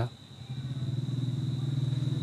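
An engine running steadily, heard as a low pulsing hum that starts about half a second in, with a faint steady high whine above it.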